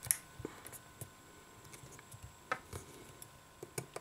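A few short, sharp clicks and taps of metal tweezers and fingers on the small parts of an opened iPhone 6 while the charging-port flex module is lined up in the frame. The first click, right at the start, is the loudest; the others are faint and scattered.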